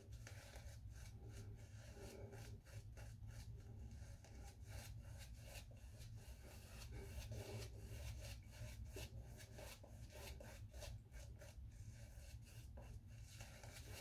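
Faint, quick, scratchy strokes of a synthetic Simpson Trafalgar T2 shaving brush rubbing shaving-soap lather onto the face.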